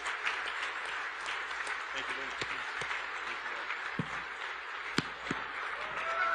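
Audience applauding steadily, a dense patter of many hands with sharp individual claps standing out.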